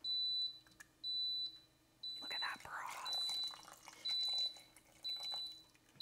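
High-pitched electronic beep repeating about once a second, each beep about half a second long. In the middle, a spatula stirs stew in the cooker's metal inner pot.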